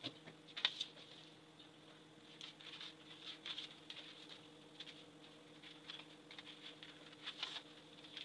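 Scissors cutting through paper pattern sheets: faint, irregular snips and scratchy paper sounds.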